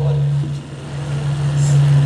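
A steady, loud, low-pitched hum on one unchanging tone.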